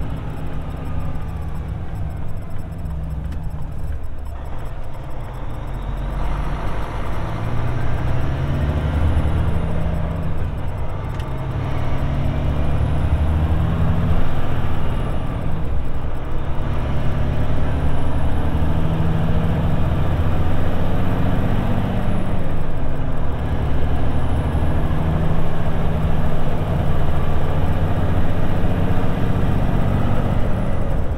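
Diesel engine of a road train prime mover pulling away and accelerating through the gears, heard from inside the cab. The engine note climbs and drops back at each gear change, several times, and the overall level rises.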